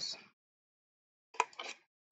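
Scissors snipping through cardstock: one short, sharp cut about a second and a half in, cutting a small wedge out of the sheet.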